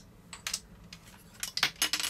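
Hard plastic parts of a Leon Kaiser transforming robot toy clicking and clacking as they are handled. A few scattered clicks come first, then a quick cluster of louder clacks in the second half.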